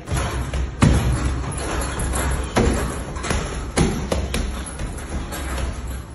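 Gloved punches landing on a hanging heavy punching bag: a series of irregularly spaced thuds, the loudest about a second in, over background music.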